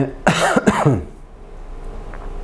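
A person coughs a few times in a quick burst, clearing the throat. It ends about a second in.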